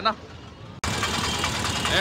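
Street traffic noise with idling vehicle engines. It starts abruptly about a second in and holds steady.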